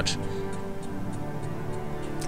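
Background music of soft, sustained held tones with faint, evenly spaced ticks running through it, like a ticking clock.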